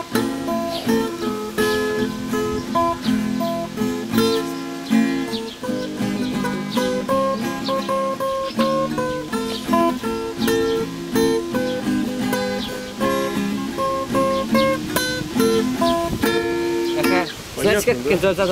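Acoustic guitar being picked: a simple, unhurried melody of single notes and short chords, note after note at an even pace.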